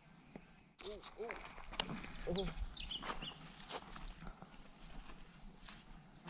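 A fishing reel's drag whining high and steady as a fish strips line, starting suddenly about a second in, mixed with knocks and clatter on the stony bank and excited shouts.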